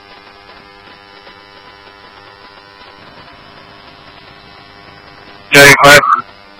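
Scanner-radio dispatch channel left open between transmissions: a faint, steady hiss and electrical hum with several fixed tones. Just before the end, a short loud burst from the radio as the next transmission comes through.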